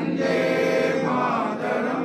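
A choir singing a slow, solemn song in one long held phrase, which tails off near the end.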